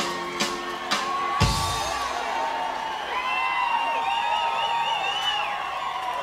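Live rockabilly band playing on stage while the crowd cheers and whoops, with a heavy drum hit about a second and a half in and a high, wavering note from about three seconds in.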